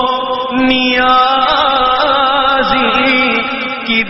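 Men's voices chanting a naat, an Urdu devotional poem, holding long sustained notes that waver in pitch, over a steady lower held tone.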